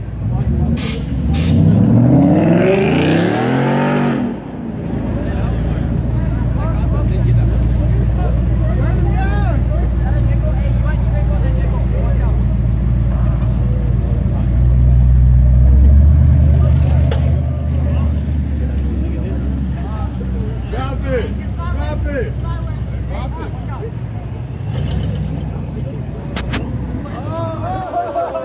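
A car engine revving hard, rising in pitch for about four seconds and then cutting off sharply. Cars then roll slowly past with a steady low engine rumble, loudest about sixteen seconds in, over crowd chatter.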